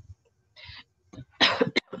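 A woman coughs once, loud and abrupt, about a second and a half in, after a faint breath.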